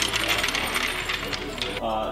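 Steel floor jack being rolled across a concrete shop floor: a dense, rapid metallic rattle and clinking from its wheels and handle, which stops abruptly near the end.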